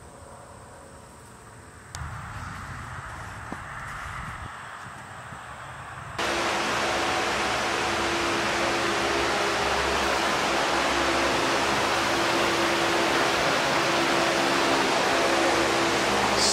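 A loud steady rush of air with a steady low hum, from an electric blower-type motor, starts suddenly about six seconds in. Before it there is a quieter low rumble.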